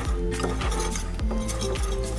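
Wire whisk clinking and scraping against a ceramic plate, stirring a thick cream cheese spread, over background music.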